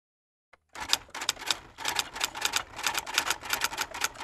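Typewriter keys clacking in a quick, uneven run of strikes, used as a sound effect for title text typing onto the screen. The strikes start just under a second in and pause briefly before the two-second mark.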